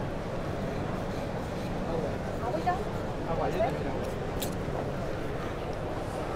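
Steady background hubbub of a busy exhibition hall, with faint distant voices and one short sharp click a little past the middle.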